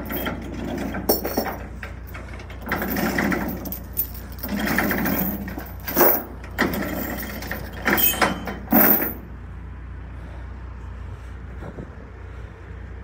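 Heavy steel tie-down chains handled on a wooden trailer deck: several sharp clanks and stretches of rattling and dragging, stopping about nine seconds in. Under them runs a steady low engine drone.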